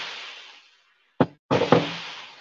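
Sizzling oil in a frying pan, fading out in the first half-second, then a sharp knock a little after a second in as a spatula strikes the pan, followed by more sizzling with small knocks of the spatula.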